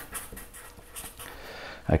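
Sharpie felt-tip marker writing on paper, a faint run of short scratching strokes as a word is lettered.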